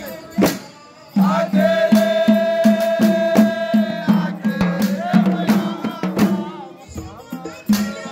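Men's voices chanting a Comorian mawlid (maulida) in unison, holding long notes, over a steady beat of frame drums at about three strokes a second, which starts up after a short lull about a second in.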